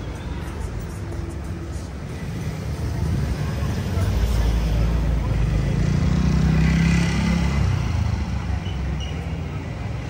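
A car passing by on the street. Its engine and tyre noise swells to a peak about six to seven seconds in, then fades over the street's steady hum.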